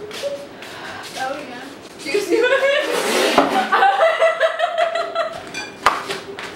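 Young women laughing and crying out in drawn-out vocal sounds, with a sharp smack near the end.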